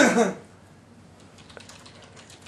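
Computer keyboard being typed on: a run of quick, light keystroke clicks that starts about half a second in, after a man's voice trails off.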